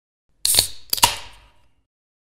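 Sound effect over a logo animation: a sharp click about half a second in, then a quick double click about a second in, each fading away over a few tenths of a second.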